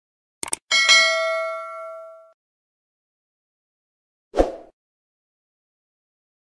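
Subscribe-button animation sound effects: a quick double mouse click, then a bell ding that rings out for about a second and a half. A short dull thud comes a little over four seconds in.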